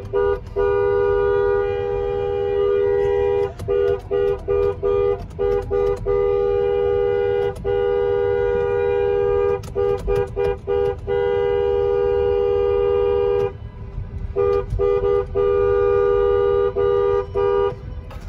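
Car horn with two pitches sounding together, honked over and over: long held blasts of a few seconds each broken by runs of short toots, with a brief pause near the three-quarter mark. Heard from inside the car.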